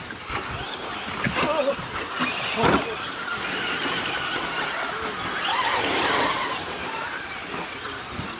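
Electric motors of Traxxas Slash RC short-course trucks whining as they race on dirt, the pitch rising and falling with the throttle. A knock about three seconds in.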